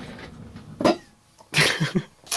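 A person coughing in a quiet room: one short burst a little under a second in, then a harsher, louder one near the end.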